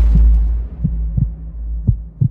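Dramatic heartbeat sound effect: deep thumps in lub-dub pairs about once a second, over a low drone and a deep bass boom that fades about a second and a half in.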